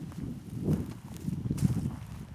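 Footsteps of someone walking on dry grass: soft, uneven thuds, the two loudest about a second apart, a little before the middle and near the end.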